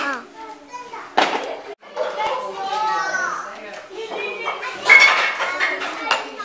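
Young children's voices chattering and calling out, words not clear, with a brief dropout about two seconds in.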